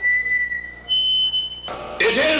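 A high, steady whistle-like tone, then a second, higher one, each held under a second; near the end a sudden burst of the band's dense noise cuts in.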